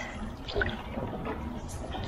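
Single-blade canoe paddle strokes in calm water: the blade dipping in and pulling through, with water splashing and dripping off it, one sharper splash about half a second in.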